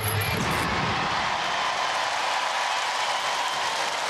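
Large studio audience cheering and applauding, starting suddenly and holding steady, with a brief low rumble in the first second.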